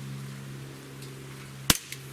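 A single shot from a Barra 1911 CO2 blowback BB pistol: one sharp pop with the slide cycling, about three-quarters of the way through, over a steady low hum.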